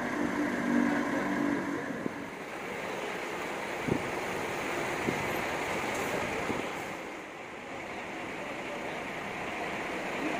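A large coach's diesel engine running steadily as the bus creeps slowly across the yard, with a single short knock about four seconds in.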